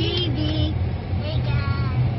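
Steady low rumble of a car's interior while driving, with brief high-pitched children's vocalizing over it.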